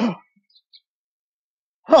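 Mostly silence, then near the end a puppet monster's voice lets out an "oh" whose pitch falls.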